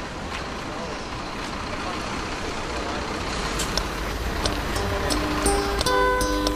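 Outdoor street ambience of steady traffic and engine noise with indistinct voices. Near the end, music with held notes and sharp clicks fades in over it.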